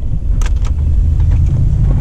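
Steady low rumble of a 2001 Toyota Sequoia's V8 and running gear heard from inside the cabin while driving, with a sharp click about half a second in as the four-wheel-drive button is pressed.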